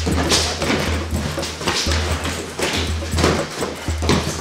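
Scuffling footsteps and dull thuds of two men grappling on a training mat, over background music with a steady pulsing bass beat.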